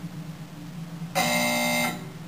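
Game-show buzzer sounding once about a second in, a steady electronic buzz lasting about three-quarters of a second, ending a team's turn at guessing the password.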